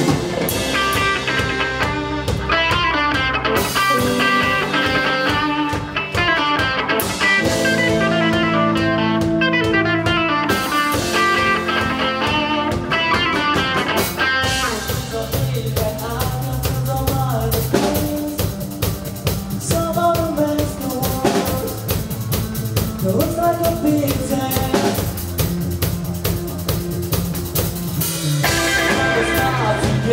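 Live rock band playing an instrumental passage on electric guitars, keyboard and drum kit. About halfway the sound thins to mostly drums and sparse guitar, then fills out again near the end.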